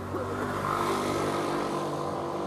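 A motor vehicle running close by in street traffic: a steady engine hum with a rushing noise that swells about half a second in and then eases.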